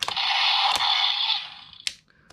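Electronic sound effect from the Karakuri Hengen toy's small speaker: a hissing whoosh lasting about a second and a half, then fading. Sharp plastic clicks come at the start, in the middle and near the end.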